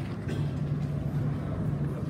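Steady low hum of room noise, with a couple of faint knocks.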